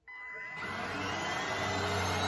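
Cordless stick vacuum switched on, its motor spinning up with a rising whine and growing louder, then running steadily.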